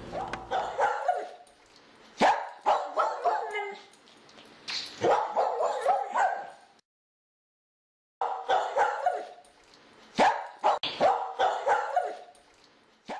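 A dog barking and yipping in clusters of short bursts, broken by a second or so of dead silence about seven seconds in.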